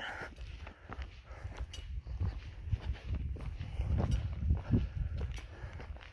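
Footsteps of a hiker walking on a dirt trail, uneven thuds under a low rumble on the handheld microphone.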